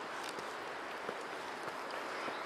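Faint footsteps of a person walking uphill outdoors, a few soft ticks over a steady background hiss.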